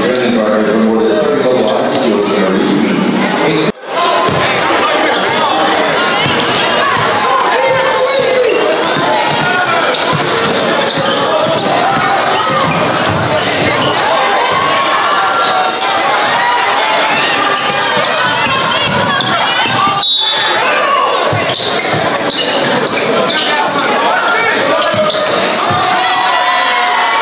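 A basketball being dribbled on a gym floor amid steady crowd chatter echoing in a large hall. The sound breaks off abruptly twice, about four seconds in and again near twenty seconds.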